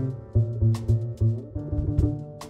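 Live jazz quintet playing: a trumpet line over plucked upright double bass notes, with keys and drums, and several cymbal strikes.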